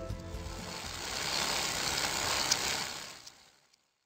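Background music's last notes cut out within the first half-second, then a hissing whoosh swell builds, holds and fades out to silence near the end.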